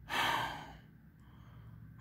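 A man's sigh: one breathy rush of air close to the phone microphone, lasting about half a second at the start, then faint room noise.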